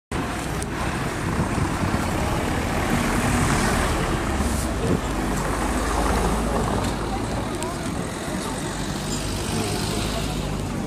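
Street traffic sound, a steady low rumble of passing vehicles, with indistinct voices and a few brief clicks.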